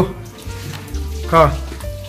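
Water from a kitchen tap splashing onto a plate as it is rinsed in the sink, a steady hiss. A short vocal sound breaks in about one and a half seconds in, over background music.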